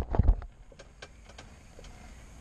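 A few knocks and rustles of the camera being handled and set down, then faint scattered clicks of handling in a quiet ice-fishing shelter.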